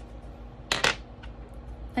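Metal X-Acto craft knife being set down on a work table: two quick clicks close together, a little under a second in.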